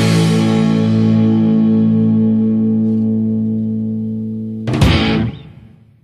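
A rock band's closing chord: distorted electric guitar held and ringing with echo, slowly fading. About four and a half seconds in, a last loud full-band hit dies away to silence, ending the song.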